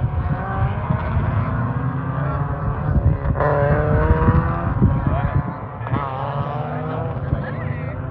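Race car engines running on the circuit, heard across the track. One engine note falls away slowly about three seconds in, and notes rise and drop sharply around six seconds in, like gear changes, over a steady low rumble.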